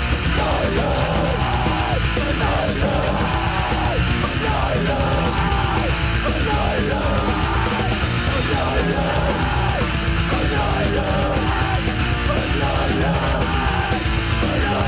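Crust punk song in a fast d-beat style: loud distorted guitars and drums under shouted vocals, at a steady, full level.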